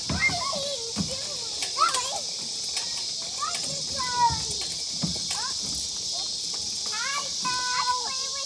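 Young children's high voices calling out and chattering while they play, the pitch sliding up and down in short bursts, over a steady high-pitched drone of insects.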